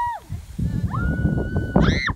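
Children squealing and calling out as a plastic saucer sled slides down a sand dune: a short rising-and-falling squeal at the start, a long held high call in the middle, and a louder shriek near the end. Under the voices runs a low rushing noise from the slide.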